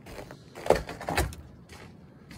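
Footsteps on a wooden deck: two knocks about half a second apart, the first the loudest, with a few fainter ones around them.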